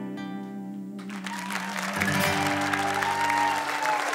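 Final strummed acoustic guitar chord ringing out and fading, then an audience breaking into applause about a second in, with a whistle sounding over the clapping.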